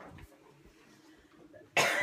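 A person gives a sudden loud cough near the end, after faint room sound.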